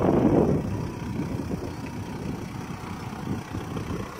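A 2007 Jeep Grand Cherokee's 3.0 litre V6 turbo diesel (CRD) idling steadily, heard from outside the vehicle, with a brief louder rush of noise in the first half-second.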